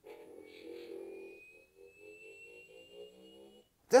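Hasbro Iron Man Arc FX Armor toy glove playing its electronic sound effect from its small speaker, set off by pressing the palm disc: a low warbling hum with a thin whine slowly rising in pitch over it, lasting about three and a half seconds before it stops.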